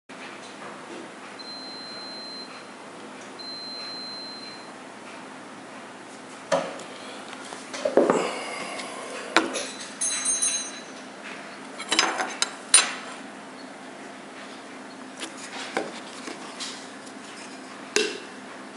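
A spice jar and a metal spoon handled and set down on a wooden tabletop: scattered knocks and clinks, a handful spread over about ten seconds, the sharpest near the end.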